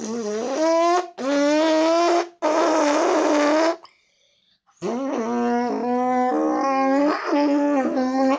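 A boy imitates a motorcycle with his mouth, forcing air out past his top lip pressed over the bottom one to make a buzzing engine sound. It comes as three revs of about a second each, the first rising in pitch. After a short pause comes a longer run of about three and a half seconds whose pitch dips and climbs like gear changes, with a short laugh near the end.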